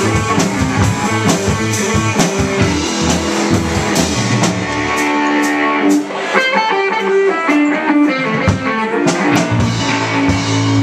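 Live rock band with electric guitars, electric bass and drum kit playing a blues-rock number. About five seconds in the bass and low drums drop out, leaving a run of electric guitar notes over cymbal hits, and the full band comes back in near the end.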